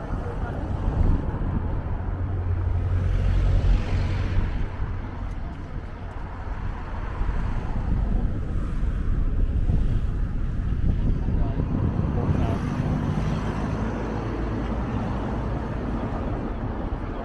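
Road traffic passing along the harbour road, a low rumble that swells and fades a few times, with wind buffeting the microphone.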